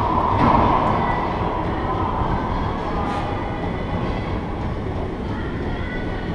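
Steady rumbling background noise filling an enclosed racquetball court, with a few faint knocks.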